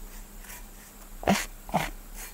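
Spoon scraping ground tamarind-seed powder across a fine mesh sieve in faint, regular strokes. About halfway through come two short whimper-like cries, the loudest sounds here.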